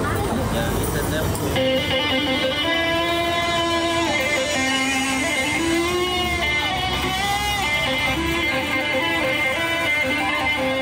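Live band music with an electric guitar playing a lead melody of held notes that bend up and down over the backing.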